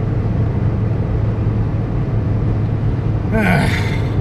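Steady engine and tyre noise inside a car's cabin on the highway, a low hum. Near the end a man makes a brief vocal sound.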